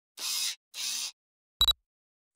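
Intro logo sound effect: two short soft swishes, then a single brief sharp click with a ringing high tone.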